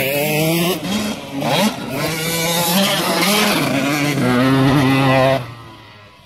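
KTM SX 85's 85 cc two-stroke single-cylinder engine revving hard, its pitch climbing and dropping several times through the gears as the bike rides the track past close by. About five and a half seconds in the sound falls away quickly as the bike moves off.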